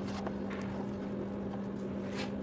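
A steady electrical hum with a few faint taps and scrapes of a plastic spatula against a clear plastic tub as a soft spread is scooped in.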